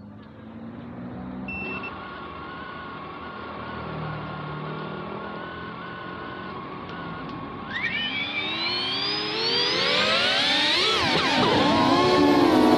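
FPV drone's brushless motors: a short beep, then a steady idle whine, then a rising whine from about eight seconds in as the throttle goes up for take-off, getting louder to the end.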